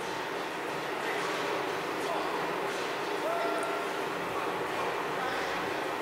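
Steady background noise with faint voices in it, with no distinct sound event.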